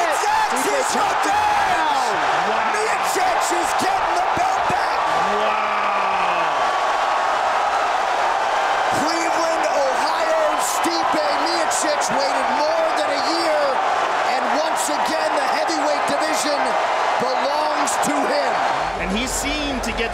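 Arena crowd cheering loudly and steadily for a knockout finish, with individual shouts and yells rising above the roar.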